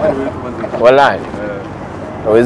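People's voices talking, with one rising and falling exclaimed syllable about a second in.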